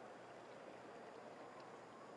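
Near silence: a faint, steady hush of room tone in the pool hall while the swimmers wait on the blocks for the starting signal.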